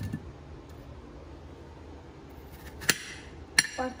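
Two sharp clinks against a ceramic plate, about two-thirds of a second apart near the end, the second ringing briefly. A soft low thump at the very start.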